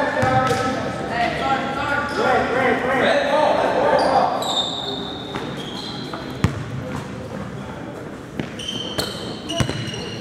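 Basketball game in a large gym: indistinct voices of players and spectators for the first four seconds or so, then short high sneaker squeaks and a basketball bouncing on the hardwood court with sharp thuds, about six and a half and nine and a half seconds in.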